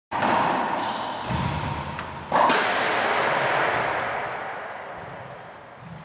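Ball strikes during a squash-court rally: two sharp hits about two seconds apart, each ringing out and fading slowly in the echoing court.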